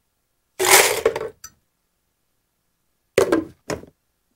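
Ice and drink mix tipped from a glass into a plastic blender jar: a single loud clattering rush of ice lasting about half a second, followed by a small click. Near the end come two short knocks as the lid is pressed onto the jar.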